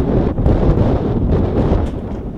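Wind buffeting the camera microphone: a loud, gusty low rumble.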